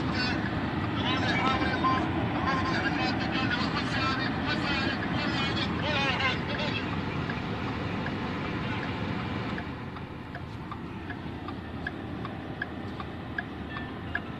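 Steady low rumble of a car's engine and road noise heard inside the cabin. From about ten seconds in, a light tick repeats about every two-thirds of a second, the car's turn-signal indicator clicking.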